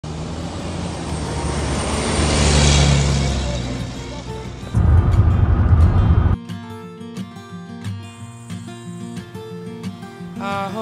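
A large truck passing close by, its noise swelling to a peak about three seconds in and then fading. A loud low rumble of road noise inside a moving van follows for about a second and a half. It cuts off about six seconds in, when background music starts.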